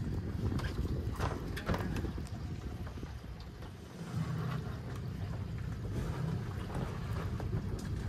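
Boat engine running low and steady, with wind buffeting the microphone. A few brief knocks come about a second or two in.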